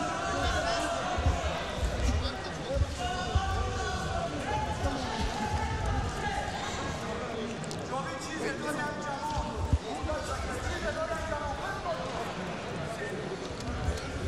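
Men's voices calling out and shouting in a large hall, mixed with irregular dull low thumps.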